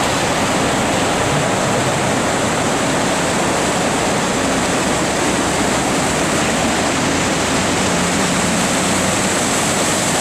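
Big Thompson River in flood, a steady loud rush of whitewater running high and fast beside the road.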